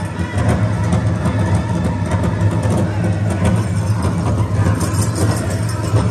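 Powwow drum group performing a song: a big drum beaten steadily under the singers' voices, with the jingle of dancers' ankle bells over it, heard across a large arena.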